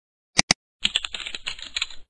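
Sound effects of a computer mouse double-clicking, two sharp clicks close together, then about a second of fast keyboard typing.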